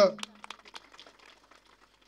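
A man's amplified voice ends on a word, then a pause with a few faint clicks and quiet room tone before he speaks again.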